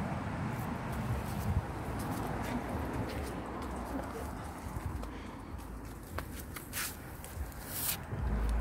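Outdoor background with a steady low rumble and a few brief rustles and clicks scattered through, more of them in the second half.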